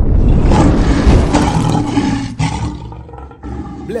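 Lion roar sound effect: one loud, rough, deep roar that fades away over about three seconds.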